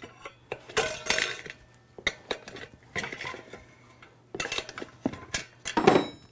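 Steel tire spoons clinking and scraping against a dirt bike's spoked rear rim as the tire bead is levered off in small bites: irregular metallic clicks and knocks, busiest near the end.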